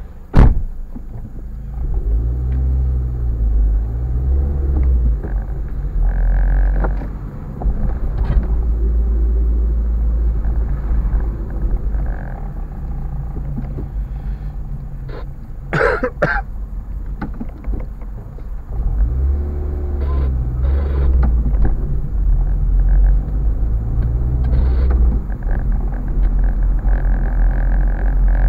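Car engine and road rumble heard from inside the cabin, a deep steady drone whose engine note rises as the car pulls away twice, once near the start and again about twenty seconds in. A short, loud sound breaks in about sixteen seconds in.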